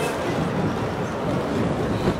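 Steady low rumbling background noise with no distinct event, like wind on an outdoor microphone.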